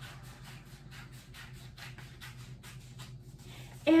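Scissors cutting orange construction paper, a quick run of snips at about four or five a second.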